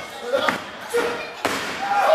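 Bodies slamming onto a wrestling ring's canvas, a few heavy thuds in quick succession, with spectators' voices calling out around them.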